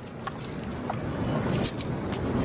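Steady background noise with a low rumble, and a few faint, short high-pitched clicks or jingles scattered through it.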